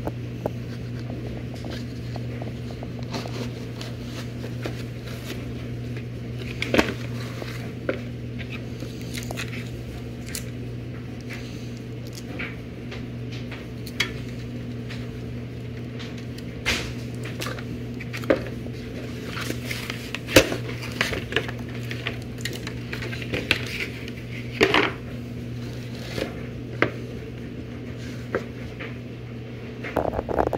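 Unpacking a boxed cabinet fan by hand: scattered rustles, light clicks and knocks of cardboard, foam, a cable and plastic bags being moved, over a steady low hum.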